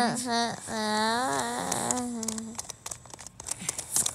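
A voice hums a long, drawn-out "mm-hmm". About two and a half seconds in it stops, and a quick run of small clicks and ticks follows as a screwdriver turns a screw in a plastic battery cover.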